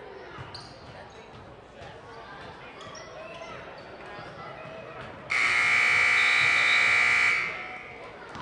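Basketball game ambience in a gym, with a ball bouncing on the hardwood and crowd voices. About five seconds in, the gym's scoreboard buzzer sounds loudly for about two seconds as one steady electronic tone, ending the period.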